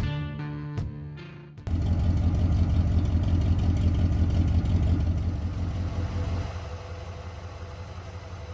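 Guitar music ends abruptly about a second and a half in. A carbureted V8 in an old Ford pickup then idles with a steady, evenly pulsing low rumble that grows somewhat quieter near the end.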